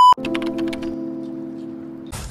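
A loud, steady, high-pitched test-tone beep, like the one that goes with TV colour bars, cut off sharply just after the start. It is followed by a sustained musical chord that slowly fades away.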